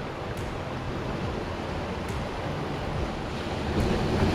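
Wind buffeting the microphone over the steady wash of ocean surf.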